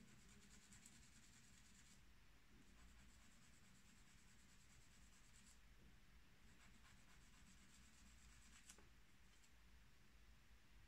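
Faint, intermittent scratching of a hand-ground steel fountain pen nib dragged over paper in short test strokes, in stretches of a second or two, with a small tick near the end. The nib is being tried out after being reground into a two-layer Cross Point.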